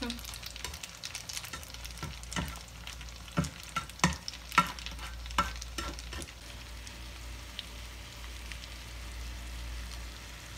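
Spaghetti and shrimp sizzling in a hot frying pan as they are tossed with tongs, with a run of sharp clicks and knocks from the tongs against the pan through the first half. After that the sizzle carries on steadily alone.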